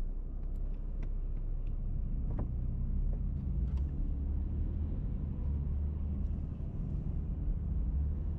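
Low, steady rumble of a car's engine and tyres heard from inside the cabin while driving slowly, with a few faint clicks in the first half.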